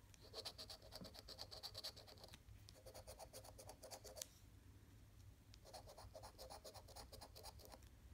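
Faint, rapid scraping of a metal coin's edge rubbing the coating off a scratch-off lottery ticket, in three runs of quick strokes with a pause of about a second and a half before the last.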